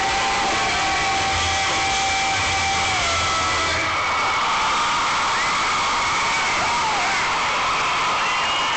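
Loud, steady crowd roar at a rock concert, heard through a phone microphone, with held guitar notes ringing through the first few seconds as a song ends.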